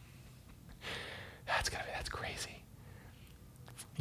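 A man's quiet, breathy vocal sounds with no clear words, starting about a second in and dying away before three seconds.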